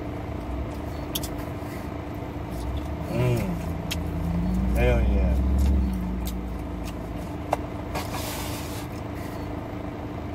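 Steady hum heard inside a parked car, with a low rumble swelling about five seconds in. Short vocal sounds come about three and five seconds in, and a sharp click comes near the end.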